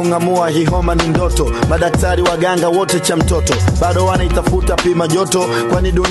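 Hip-hop song with rapped vocals in Swahili over a drum beat and a deep bass line.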